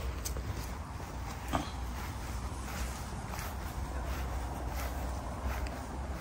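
Soft footsteps on a grass lawn over a low, steady background rumble, with a couple of faint clicks, the clearest about a second and a half in.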